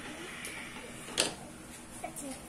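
Thick ice candy mixture pouring into an upturned plastic bottle on a drink dispenser, a soft steady pour, with one sharp click about a second in.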